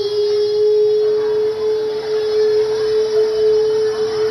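A child holding one long sung 'aah' into a microphone through loudspeakers, at a single steady pitch, sustained as long as one breath lasts.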